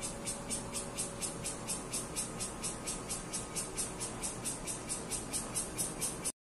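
Cicadas calling from a tree: a high, pulsing buzz that repeats evenly about four to five times a second.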